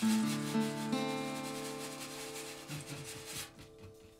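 Closing chords of an acoustic guitar and dobro, struck twice about a second apart and left to ring, fading out by about three and a half seconds. A snare drum is swept with a brush underneath them.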